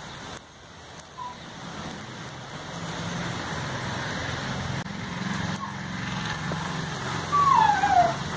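A low engine rumble, as of a motor vehicle, growing louder over several seconds, with a short falling whistle-like tone near the end.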